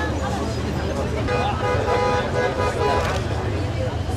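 A vehicle horn sounds one long, steady note for about a second and a half, over crowd chatter and a low street rumble.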